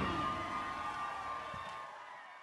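The ringing tail of a live rock-funk band's final note fading away, a faint steady tone dying out.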